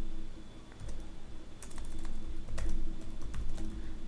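Typing on a computer keyboard: a series of separate key clicks at an uneven pace.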